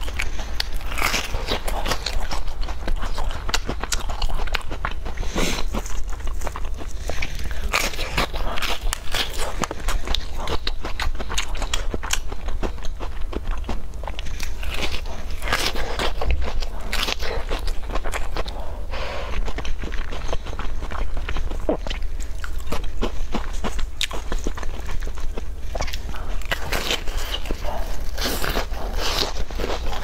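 Close-miked biting and chewing of a large glazed, waffle-patterned cookie: irregular crunches and crackles go on throughout.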